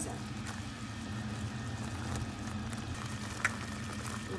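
Creamy sauce bubbling as it simmers in a steel pot while being stirred with a silicone spatula, over a steady low hum. A single short knock comes about three and a half seconds in.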